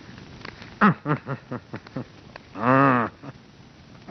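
A man's wordless voice: a quick run of short syllables, each falling in pitch, then one loud, long, drawn-out call that rises and falls.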